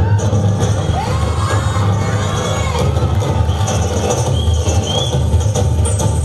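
Loud dance music with a heavy bass line, with an audience cheering and children shouting over it, the shouts coming mostly in the first few seconds.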